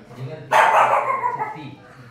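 A dog barks loudly once about half a second in, the sound dying away over about a second, over background voices.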